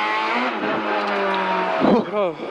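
Peugeot 206 RC Group N rally car's 2.0-litre four-cylinder engine, heard from inside the cabin, running hard under throttle. Its pitch rises slightly about half a second in, holds steady, and wavers briefly near the end.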